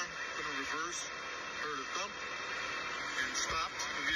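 A man's speech from a TV news report playing back, quieter than the nearby voice and with a radio-like sound.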